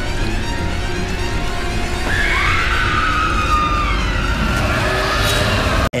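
Horror-film clip soundtrack: a loud, heavy low rumble under music, with a high wailing tone that comes in about two seconds in and slowly falls.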